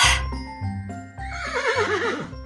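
Horse whinnying: one wavering neigh, falling in pitch, starting a little past halfway and lasting about a second, over light background music.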